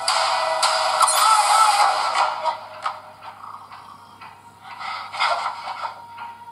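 Film trailer soundtrack of music and sound effects. It is loud and dense for the first two seconds or so, then drops back to quieter sound with scattered clicks and a short loud swell about five seconds in.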